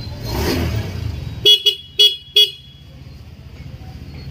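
Honda Beat scooter beeping four short, loud times in quick succession. Just before, a brief rush of noise about half a second in.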